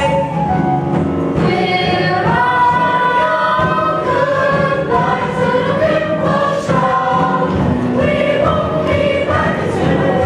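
Musical-theatre ensemble singing a chorus number together over instrumental accompaniment, with long held notes.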